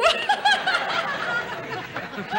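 A woman laughing in short bursts, over a wash of studio audience laughter.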